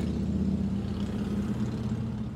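A steady low mechanical hum with an even stack of low tones, like an engine idling.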